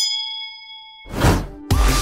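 A notification-bell ding sound effect: one bright chime of several pitches that rings and fades over about a second. A whoosh swells about a second in, and electronic music with a steady beat starts near the end.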